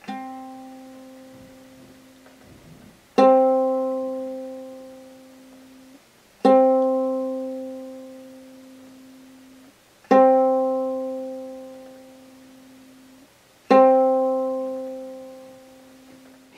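Ukulele's open C string plucked five times, about every three and a half seconds, each note ringing out and fading away, the first one softer. It is the middle C of standard GCEA tuning, sounded as the reference note to tune that string by.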